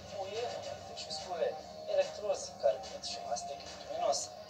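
A television commercial heard through the set's speaker: a voice-over talking over background music.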